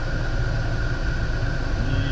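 Van engine idling, heard inside the cab: a steady low drone with a faint steady whine above it.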